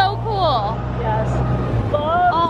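Vintage Amphicar's rear-mounted four-cylinder Triumph engine running with a steady low drone as the car cruises on the water, with brief voices over it. The drone eases off near the end.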